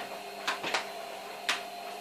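Plastic casing of an Asus Eee PC netbook being handled on a table as it is turned over and its lid opened: three short sharp clicks and knocks, two close together about half a second in and one about a second later.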